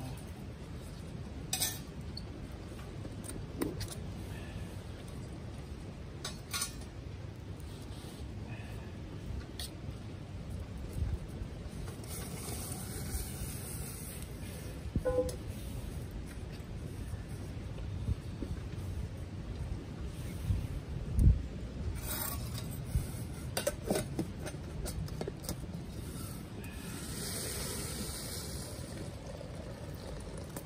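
Wood campfire crackling with scattered clicks, over a steady low wind rumble on the microphone, and occasional clinks of metal camp pots. A low thump a little past the middle is the loudest sound.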